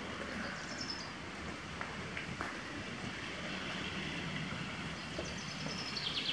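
Steady rain falling, an even hiss, with a faint bird chirp about a second in.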